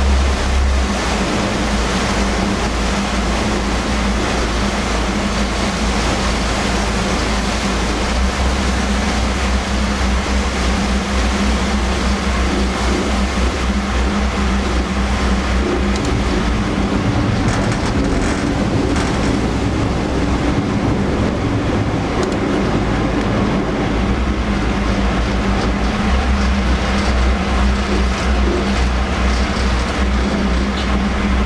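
Sanyo Kisen passenger ferry's diesel engine droning steadily, with water rushing along the hull. About halfway through, the engine note changes as the boat manoeuvres alongside the floating pier, then settles again near the end.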